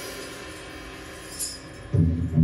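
A live rock band's instruments ringing out and dying away through the amplifiers at the end of a song, faint and steady. There is a short bright jingle about one and a half seconds in.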